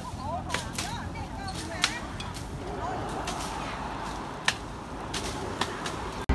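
Undergrowth being cleared by hand: scattered sharp cracks and snaps of stems and brush being cut, about eight over a few seconds, irregularly spaced.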